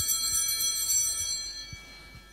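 Altar bells, a cluster of small bells shaken once, jingling and then dying away over about two seconds: the bell rung at the epiclesis of the Mass, as the priest calls down the Spirit on the bread and wine.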